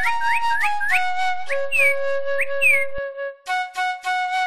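Instrumental music with a high flute-like melody of quick upward-sliding notes over held lower notes, pausing briefly a little after three seconds in.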